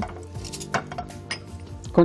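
A few light clinks of cookware and utensils being handled at the stove and counter, over soft background music.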